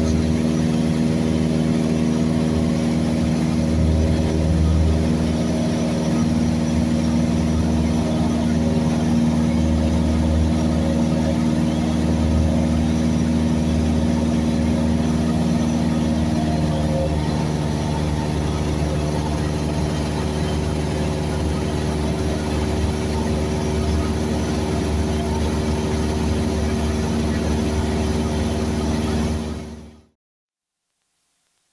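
Cessna 172S's four-cylinder Lycoming engine and propeller droning steadily in cruise, heard inside the cabin. Its pitch settles slightly lower about two-thirds of the way through, and the sound fades out at the very end.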